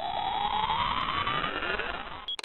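Intro riser sound effect: a synthetic sweep climbing steadily in pitch.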